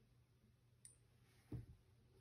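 Near silence: room tone, with one faint sharp click a little under a second in and a soft low knock about a second and a half in.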